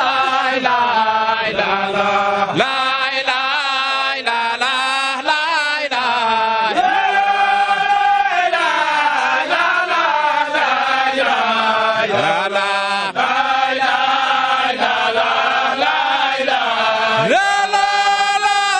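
Men's voices chanting a Qadiriyya Sufi devotional chant, a melodic line sung loudly and without pause.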